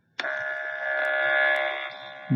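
GEM5000 gas analyzer's internal sample pump starting suddenly and running with a steady buzz as the instrument goes into its purge, fading near the end.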